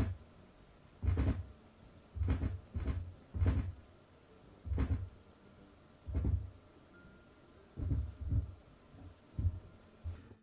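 Fingertips drumming on a cloth-covered table: about nine short, soft thumps at uneven intervals.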